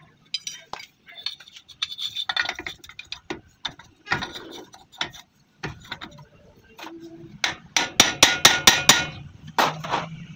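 Metal tools clinking and knocking against a Bolero pickup's front wheel hub during a bearing-greasing job. Scattered clicks give way, past the middle, to a quick loud run of sharp metallic strikes, about five a second, then one more strike.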